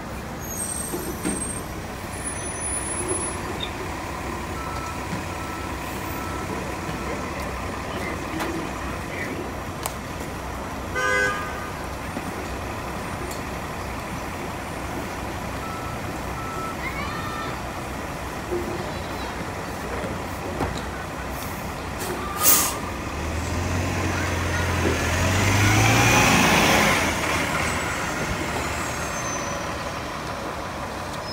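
Nova Bus LFS city bus running at a stop, with a short chime-like tone about eleven seconds in and a sharp hiss of air from the air brakes about two-thirds of the way through. The bus then pulls away, its engine and drivetrain rising in pitch and stepping up through the gears before fading.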